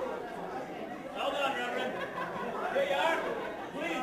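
Crowd chatter: several people talking over one another in a room, with some laughter.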